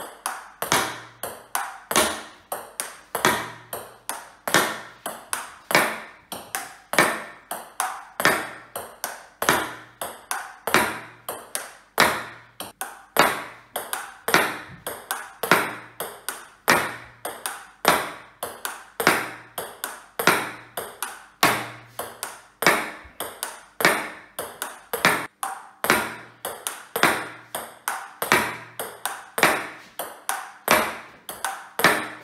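Celluloid-style table tennis ball clicking off a rubber bat and a plastic-laminate table over and over, about two to three sharp clicks a second, as serves are played one after another.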